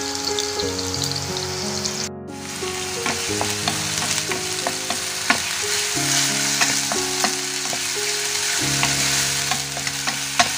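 Curry ingredients sizzling in hot oil in a cooking pan, stirred with a utensil that clicks against the pan now and then. The sizzle drops out briefly about two seconds in.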